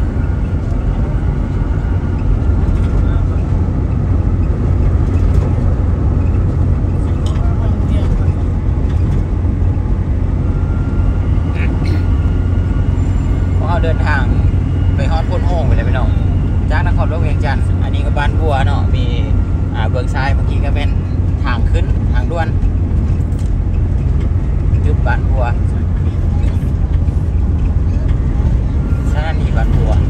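Steady low road and engine rumble inside a moving vehicle's cabin, with voices talking off and on through the middle stretch.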